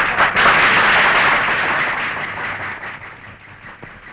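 Audience applauding, strongest at first and dying away over the last couple of seconds.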